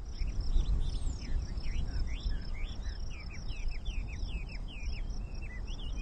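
Outdoor grassland ambience: small birds calling in many short, quick, falling chirps over a steady, high pulsing trill, with a low rumble underneath.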